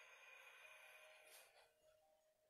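Near silence: very faint soft background music, with a faint hiss over the first second and a half.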